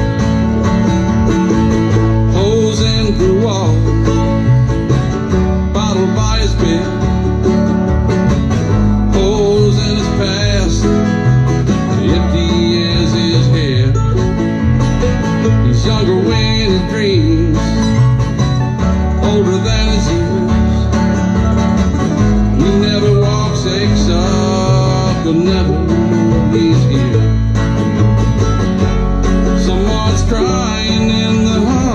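Acoustic string trio of mandolin, acoustic guitar and upright bass playing an instrumental break: a plucked lead melody over strummed guitar chords and plucked upright-bass notes, in a bluegrass-country style.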